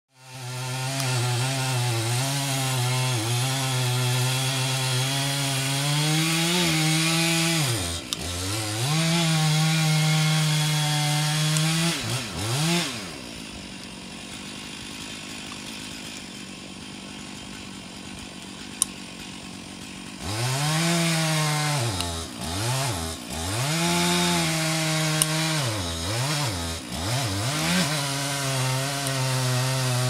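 Two-stroke gasoline chainsaw cutting into a tree trunk at full throttle, its pitch sagging briefly a couple of times under load. Near the middle it drops to a quieter idle for about seven seconds, then it is revved up and down several times before running steadily at full speed again near the end.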